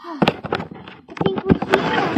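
Plastic wrapping crinkling in quick, irregular crackles as it is handled.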